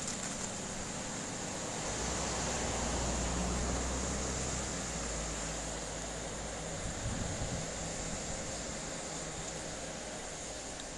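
Steady background hiss with a low vehicle-engine rumble that swells about two seconds in and fades after about five seconds, and a few low knocks around seven seconds.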